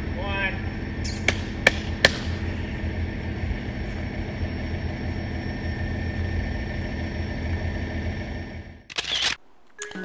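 Steady outdoor background with a low hum, a short voice right at the start, and three sharp clicks between about one and two seconds in. The sound drops out near the end.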